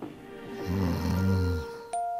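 A man's loud snore, a single rough low snort lasting about a second, over soft background music with held notes. A bell-like chime sounds near the end.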